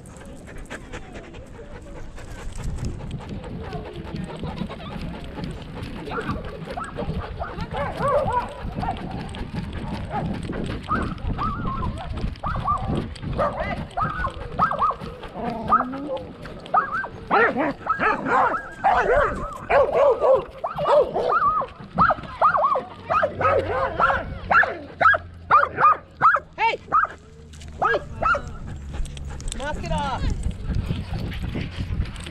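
Dogs barking, yipping and whining, sparse at first and then a long run of short, loud barks in quick succession from about halfway through. A low rumble from the harness-mounted camera moving with the dog runs underneath.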